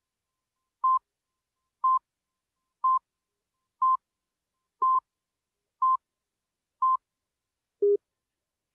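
Countdown beeps on a commercial slate: seven short, steady electronic tones about a second apart, then one lower-pitched beep at the end, cueing the start of the spot.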